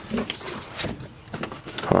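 Dogs moving and panting around an open car door, with scattered light knocks and rustling and a sharp click a little under a second in.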